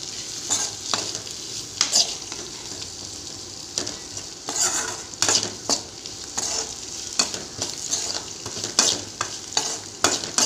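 Shallots, garlic and dried red chillies sizzling in oil in a metal kadai while a steel spoon stirs them, with irregular scraping strokes of the spoon against the pan over a steady frying hiss. The stirring eases for a moment about three seconds in.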